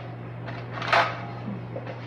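Brief rustle of the aluminium foil lining in an air fryer basket as a hand works in it, about a second in, over a steady low hum.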